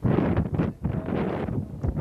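Wind buffeting the microphone: a loud, gusty rumble with brief lulls about two-thirds of a second in and again near the end.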